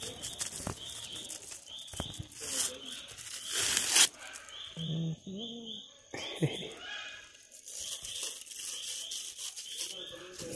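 Thin plastic bag crinkling and tearing as it is peeled off a frozen ice pop, loudest about three to four seconds in.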